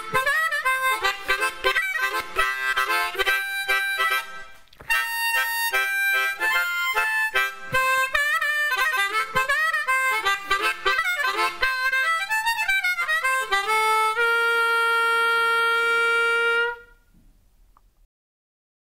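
Blues harmonica played alone: a run of quick notes with bent, sliding pitches, ending on one long held note that stops sharply near the end.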